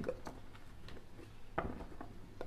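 A pause in speech: faint room tone with a low steady hum and one brief soft sound, like a breath, near the end.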